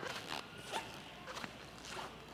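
A handful of short, soft rustling scrapes, about five, spaced unevenly a few tenths of a second apart, at a low level.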